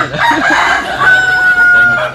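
A rooster crowing loudly, one crow whose ragged opening gives way to a long held final note.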